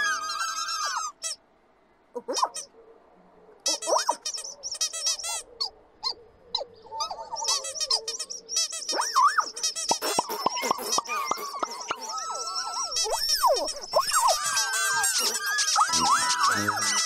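Many tiny high-pitched squeaky chirping voices, overlapping. They break off briefly just after a second in, then return sparse and grow into a busy chatter of short rising and falling chirps.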